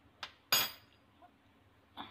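Kitchenware clinking against a glass mixing bowl: a light tick, then about half a second in a sharp clink that rings briefly.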